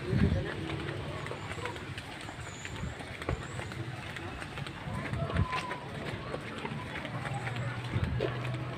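Footsteps of several people walking on a concrete street, shoes scuffing and tapping irregularly, with indistinct voices in the background. A louder thump comes right at the start.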